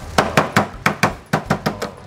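Rapid, uneven knocking on a wooden cutting board as cooked crab is broken up by hand, about ten sharp knocks in two seconds.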